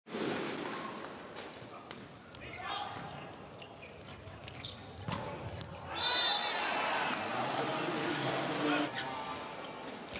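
Sound of an indoor volleyball rally: sharp smacks of the ball being hit, over crowd noise and shouting voices. It gets louder from about six seconds in.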